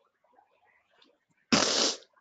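A loud burst of noise about half a second long, starting suddenly about a second and a half in and cutting off sharply, after faint low sounds.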